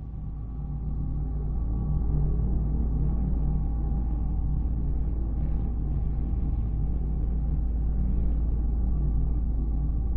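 A deep, steady rumbling drone with a few sustained low tones, swelling up over the first two seconds and then holding: the dark score of a game cutscene.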